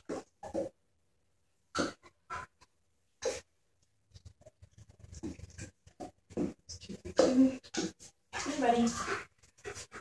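A dog panting in quick short breaths, coming in about four seconds in and growing louder towards the end.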